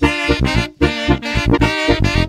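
Mexican banda brass band playing an instrumental passage: brass and reeds in harmony over a steady, punchy low beat from tuba and drum.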